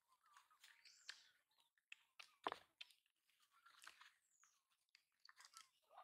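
Faint, irregular chewing and mouth clicks of a baby monkey eating a piece of rolled sponge cake, with one louder click about two and a half seconds in.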